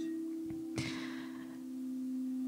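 Frosted quartz crystal singing bowls ringing with a sustained hum of two steady low tones that dip slightly and swell again, with a soft breath about a second in.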